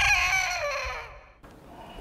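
Rooster crowing sound effect: the drawn-out end of a cock-a-doodle-doo, its pitch sliding down and fading out about a second and a half in.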